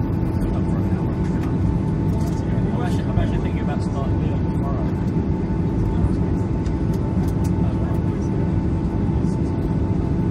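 Cabin noise of a Boeing 737-800 taxiing after landing: the steady low rumble of its CFM56-7B engines at taxi power, with a steady whine over it.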